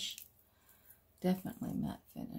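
A woman's brief wordless vocal sound, a murmur starting about a second in after a quiet stretch.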